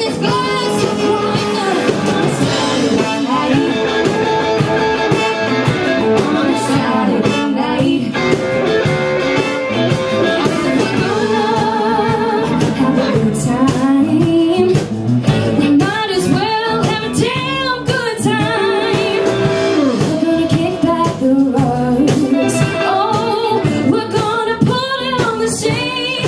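Live blues band playing: electric guitars, bass and drums with female lead vocals. The singing is strongest in the second half.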